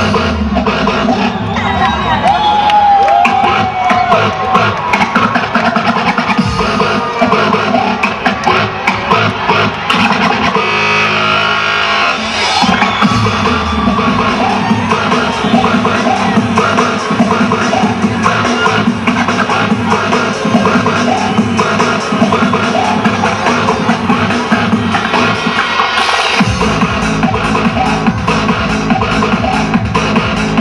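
Electronic dance music from a DJ set, played loud over a PA system, with crowd noise underneath. The bass drops out about ten seconds in and comes back a couple of seconds later.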